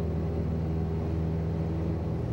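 Steady engine drone of a light propeller aircraft in flight.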